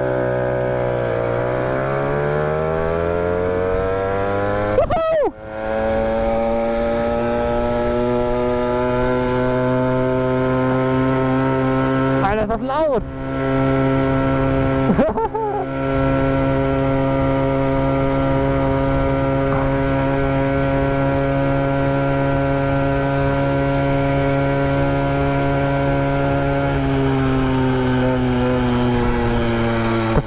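Two-stroke pocket bike engine revving up as the bike pulls away, then running steadily at high revs with a buzzy pitch. The throttle is shut off for a moment and reopened three times, and the revs sink slowly near the end as the rider eases off.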